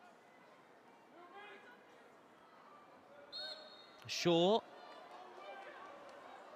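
Referee's whistle blown for a foul throw: a short blast a little after three seconds in, then a louder, longer blast about a second later with a voice shouting at the same moment, over faint calls from the pitch and stands.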